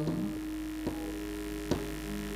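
A steady electrical hum from the amplification, with a soft held tone over it and two faint ticks, about a second in and near the end.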